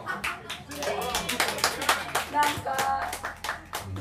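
A small audience clapping in scattered, uneven claps, with voices mixed in.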